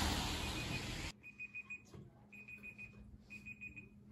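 A steady rush of outdoor noise that cuts off about a second in, followed by an alarm clock beeping: rapid high beeps in three short bursts about a second apart.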